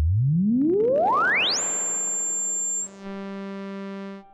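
ARP 2600 synthesizer's filter at full resonance, self-oscillating: a pure whistling tone glides smoothly up from a low hum to a high, piercing pitch as the cutoff is raised, holds there for about a second, then stops. A steady, buzzier low synth tone follows near the end.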